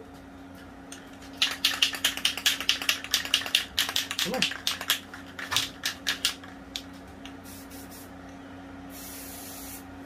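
Aerosol spray-paint can fired in quick short taps on the nozzle, about four or five a second for a couple of seconds and then more sparsely, spattering specks of paint for stars. Near the end comes one steady spray lasting about a second.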